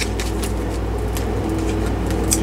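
A steady low background hum, with a few faint clicks of tarot cards being handled.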